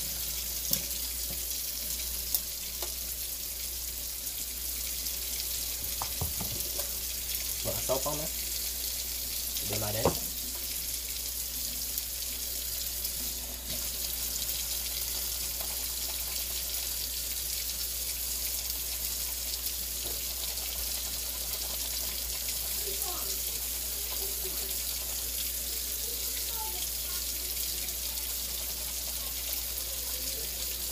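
Kitchen faucet running steadily into a stainless steel sink while soapy shoelaces are rubbed by hand under the stream, with a few short louder noises about a quarter of the way in.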